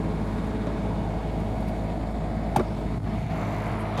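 Electric rewind motor of an RV's powered water-hose reel running steadily as it winds the hose in, a low even motor hum, with one sharp click about two and a half seconds in.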